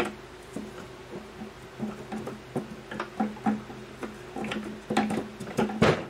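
Light wooden clicks and clatter as thin wooden beehive frame top bars are handled and set into a wooden frame-assembly jig. The knocks come irregularly, the loudest right at the start and just before the end, over a steady low hum.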